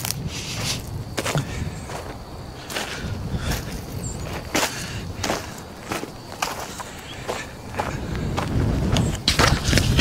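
A side-by-side utility vehicle driving slowly over rough, freshly cleared dirt: a steady low engine rumble with frequent knocks and rattles as it jolts over the ruts.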